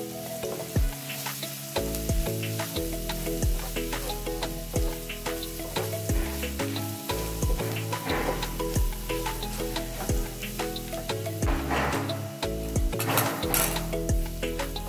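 Sliced onions and spice powders frying in oil in a nonstick pan, sizzling while a wooden spatula stirs and scrapes them, with scattered clicks of the spatula against the pan.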